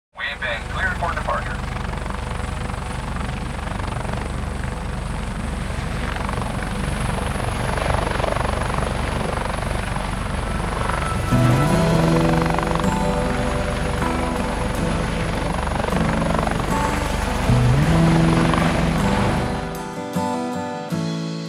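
Steady low rotor-like drone of an aircraft with a hissing wash over it. About halfway in, pitched notes slide up and hold, and they come back near the end.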